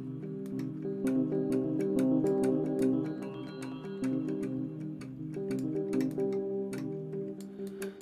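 Ableton's Electric, a physically modelled electric piano after the Fender Rhodes and Wurlitzer, playing held chords that change over several seconds, with a run of short sharp clicks over the notes.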